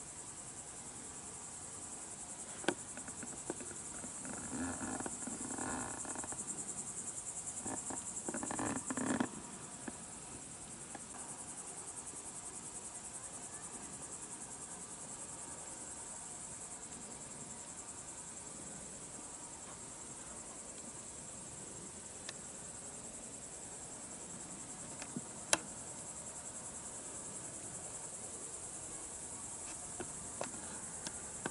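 Evening chorus of crickets: a steady high-pitched trill that runs on throughout. A stretch of duller, lower noise comes between about four and nine seconds in, and a few faint sharp clicks are heard, one near the end.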